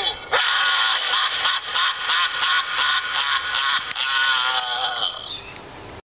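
Animated Halloween zombie-head prop playing a tinny, distorted voice track through its small built-in speakers: wavering vocal sounds without clear words, fading out near the end.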